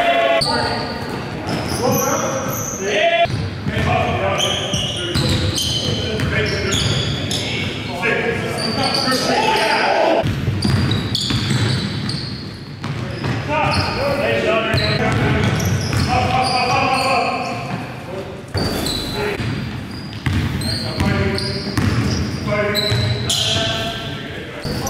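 Live basketball game sound in a large gym: a basketball bouncing on the court, sneakers squeaking on the floor and players shouting, all echoing off the hall.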